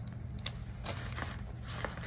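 Faint rustling and soft clicks of paper dollar bills being handled and tucked into a plastic binder pouch, over a steady low hum.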